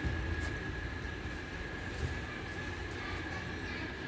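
Steady mechanical background noise: a low rumble and hiss with a constant thin high whine, like a running machine, and a few faint light ticks.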